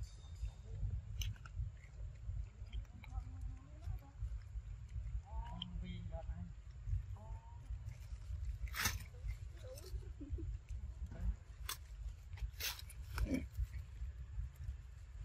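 Macaques feeding: a few short high squeaks with a bending pitch come about five to seven seconds in, and several sharp clicks follow in the second half, all over a steady low rumble.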